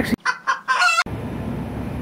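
Chicken clucking sound effect, about a second long, cut in abruptly and cut off abruptly, followed by steady outdoor background noise.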